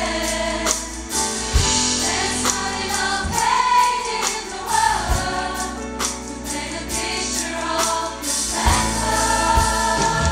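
Large gospel choir singing together, backed by a live band of keyboard, bass guitar and drums, with a few separate drum hits spread through the passage.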